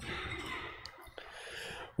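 Quiet room tone with a soft breath-like hiss and a couple of small clicks, in the pause before a cappella congregational singing; the singing begins right at the end.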